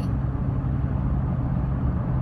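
Steady low drone of a car's engine and road noise heard inside the cabin while driving.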